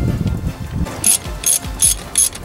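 Hand ratchet wrench clicking in short bursts, one per back-swing, about three a second, starting about a second in, as it runs in the bolts of a turbo exhaust manifold.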